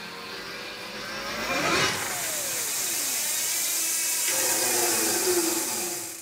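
The Nireeka Mega e-bike's electric motor, driven by the thumb throttle, spins the unloaded wheel up to speed. It makes a whine that rises in pitch for about two seconds and then holds steady at high speed.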